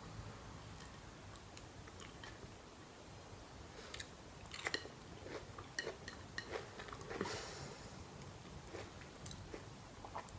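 A person chewing a mouthful of noodles and zucchini, faint, with scattered small wet clicks and a brief soft rush of noise about seven seconds in.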